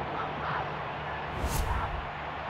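Football broadcast's pitch-side ambience: a steady wash of background noise, with a brief sharp burst about one and a half seconds in.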